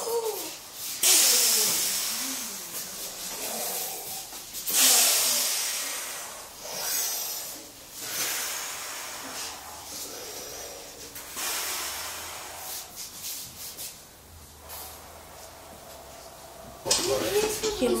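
A group of children and their teacher hissing out their breath together on a long 'sss', about five times over, each hiss starting strong and fading away: a group breathing exercise for young brass players.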